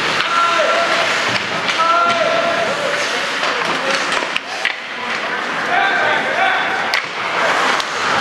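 Ice hockey in play: skate blades scraping on the ice, a few sharp clacks of sticks and puck, and short shouted calls from the players.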